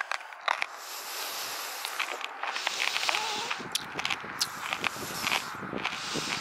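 Footsteps of a person walking over rough grassy ground, with irregular clicks and crackles and a rustling that grows louder.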